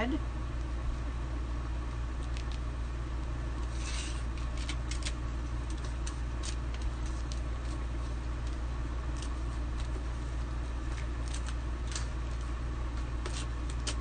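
Light rustles and scattered clicks of a plastic adhesive stencil transfer being handled and positioned on a sign board, over a steady low hum.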